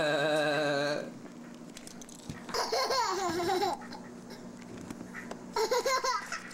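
A young child laughing in high, wavering giggles, in three bouts: a long one at the start, another about two and a half seconds in, and a short one near the end.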